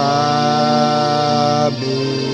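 Yamaha electronic keyboard playing sustained chords: one chord sounds at the start and is held for most of two seconds, then gives way to another held chord near the end.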